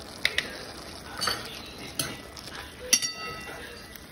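A metal spoon stirring chopped bell peppers into thick curry paste in an aluminium pan, knocking and scraping against the pan about five times. The loudest knock comes about three seconds in and rings briefly.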